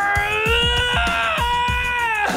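A man's long, high, strained scream held through a pull-up attempt, stepping up in pitch about halfway, over background music with a steady drum beat.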